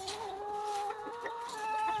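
A chicken giving one long, drawn-out call at a nearly steady pitch, rising slightly near the end.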